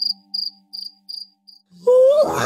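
Crickets chirping, a short high chirp about every 0.4 seconds, over a soft held music chord that fades away. Just before the end a voice-like moan starts, rising in pitch.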